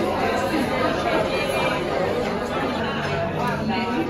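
Background chatter of restaurant diners: many overlapping voices blurring together at a steady level, with no single voice standing out.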